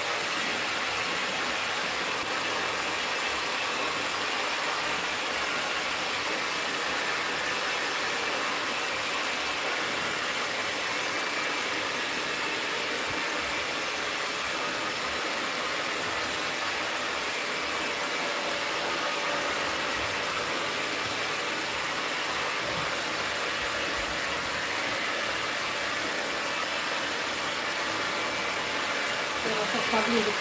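Hand-held hair dryer running steadily while blow-drying hair, a continuous even rush of air.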